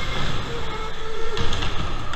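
Electric go-kart driving, its motor giving a steady whine over a rough rumble. About one and a half seconds in comes a sudden thump, karts bumping as another kart closes in alongside.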